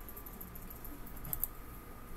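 Faint clicking of a computer keyboard and mouse, a short cluster about a second and a half in, over room noise and a faint steady whine.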